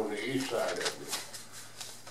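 A man's voice in a small hall, a short stretch of speech at the start, then a pause with a few faint clicks.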